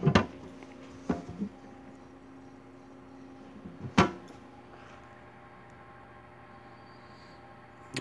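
A few soft handling noises about a second in, then one sharp knock about halfway through as a hand sets the hopper lid down on the stainless top of a Taylor C712 soft serve machine. Under it, the machine hums faintly and steadily with its hopper refrigeration running.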